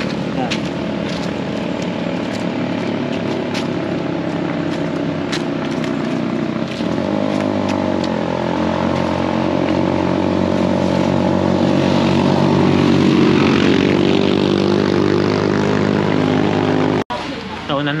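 A steady motor drone made of several held tones, dipping and shifting in pitch about halfway through, then cut off abruptly near the end.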